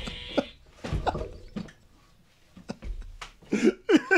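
Men laughing and breathing in short bursts, with a few knocks and rustles of movement; a brief quiet gap a little after two seconds in, then laughter builds again near the end.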